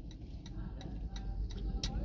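Faint regular ticking, about three short ticks a second, over a low outdoor rumble.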